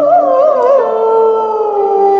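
A woman's solo voice sings one long held phrase of a Turkish classical song in makam Hüzzam. The note is ornamented with quick trills for the first second, then glides down and settles on a steady lower note.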